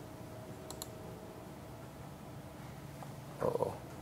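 A quick pair of faint clicks at a presentation computer, less than a second in, over a steady low room hum. A brief, louder muffled sound comes near the end.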